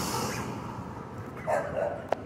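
A dog barks briefly about one and a half seconds in, over a steady background hiss.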